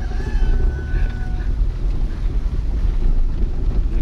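Car driving on a gravel road, heard from inside the cabin: a continuous, uneven low rumble of engine and tyres on loose stones, with wind buffeting the microphone.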